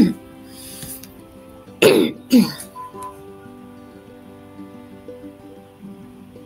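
A person clearing their throat and coughing: one short burst right at the start, then two more close together about two seconds in. Soft background music plays underneath.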